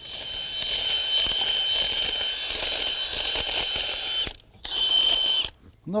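Cordless drill with a spade bit boring into a tree trunk's rotten wood. The motor runs steadily with a constant whine for about four seconds, stops briefly, then runs again for about a second.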